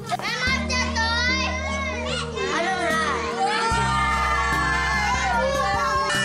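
Children's high voices calling out excitedly over background music with held bass notes that change every second or two.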